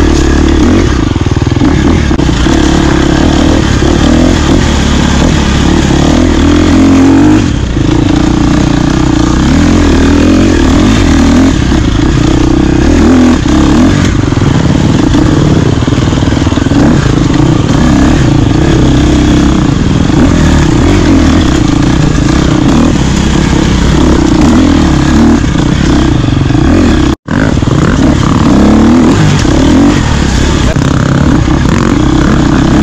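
Dirt bike engine running continuously on an enduro ride, its pitch rising and falling as the throttle opens and closes. The sound drops out for an instant near the end.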